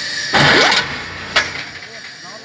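Construction hoist's electric drive starting briefly: a loud rush of mechanical noise with a rising whine, lasting under half a second, followed about a second later by one sharp click.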